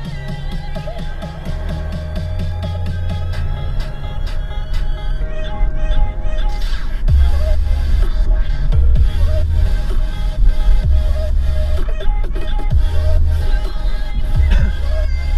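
Electronic music with a heavy bass beat playing on a car's satellite radio, growing louder over the first few seconds.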